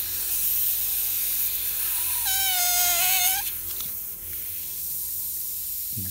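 Airbrush spraying paint with a steady hiss that eases off past the middle, over a faint steady hum. About two seconds in, a single high, held cry-like tone sounds for about a second and is the loudest thing.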